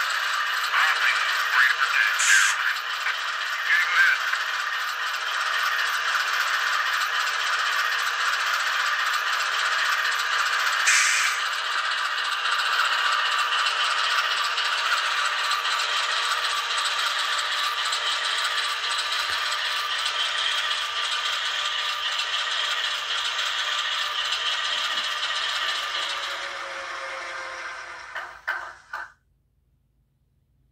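GE diesel engine sound from an ESU LokSound V5 Micro decoder, played through tiny 9 mm × 16 mm sugar cube speakers in N scale Atlas Dash 8-40BW locomotives: a steady, thin, rattly running sound with no bass. It fades and stops about a second before the end.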